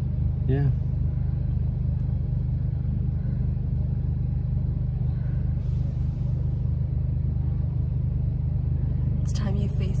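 Steady low drone of a car's engine heard inside the cabin: an even hum that never changes pitch.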